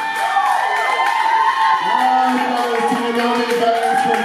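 Audience cheering and whooping at the end of a live song, many voices rising and falling in pitch together.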